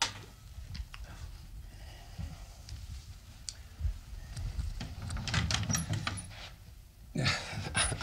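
Quiet footsteps and scattered light knocks and clicks as a man crosses a room and opens a wooden cabinet, with a denser run of small clicks about five seconds in.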